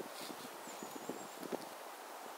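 Soft, irregular low thumps and rustling from a person moving with a handheld camera in snow. A faint, thin high whistle lasts about half a second near the middle.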